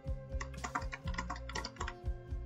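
Typing on a computer keyboard: a quick run of about a dozen keystrokes, over background music.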